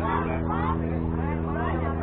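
Indistinct chatter of youth baseball players and spectators over a steady low hum.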